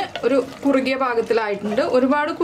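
A woman speaking; her voice is the only clear sound.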